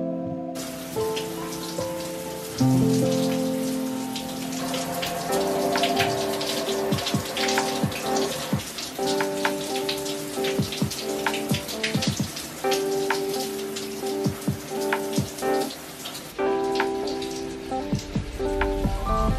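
Shower water running and splashing, starting about half a second in and cutting off near the end, under background music.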